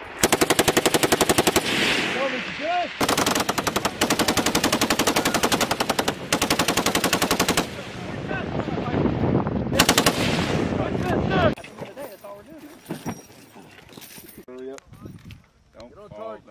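Belt-fed machine gun firing several long, rapid bursts with short gaps between them. The firing stops about three-quarters of the way through, leaving only faint voices.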